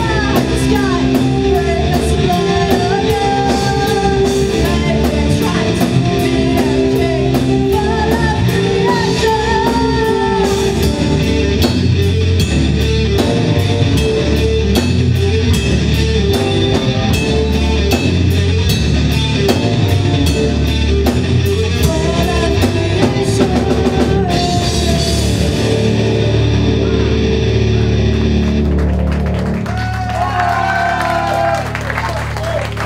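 A symphonic metal band playing live: female lead vocals over distorted guitar, keyboards, bass and a full drum kit. In the last few seconds the drums stop and the band holds a final chord that fades out as the song ends.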